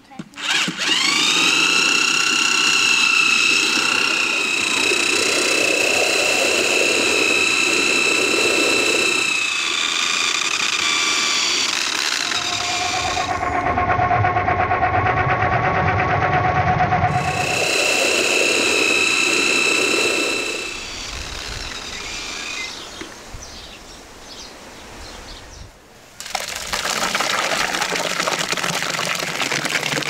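Electric drill driving a long blending shaft through watermelon flesh in a large aluminium pot. It gives a loud whine that rises in pitch as it spins up, shifts to a lower tone for a few seconds in the middle, and stops about twenty seconds in. Near the end, thick watermelon pulp pours from the pot into a basin.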